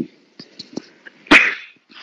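A single sharp burst of noise a little over a second in, the loudest thing here, with a few faint clicks before it.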